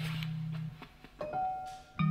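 Sparse improvised music from a small ensemble: a low held tone stops under a second in, leaving a near-quiet gap broken by one short higher note and a faint wash of sound.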